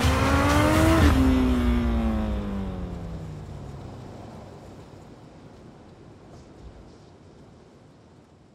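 Honda Fireblade sportbike's inline-four engine passing at speed: the pitch rises as it approaches, drops sharply as it goes by about a second in, then keeps falling as the sound fades away.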